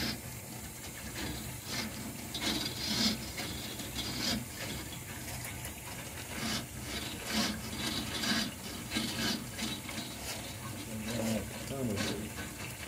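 Drain-cleaning machine cable turning and scraping inside the drain pipe in irregular bursts as it is worked through a partly blocked laundry drain.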